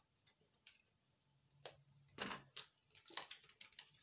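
Near silence with a few faint, scattered clicks and taps, more of them near the end: tarot cards being handled and picked up off camera.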